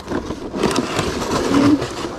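Cardboard box and clear plastic packaging being handled as a boxed collectible is pulled out, a busy run of rustling and crackling from about half a second in.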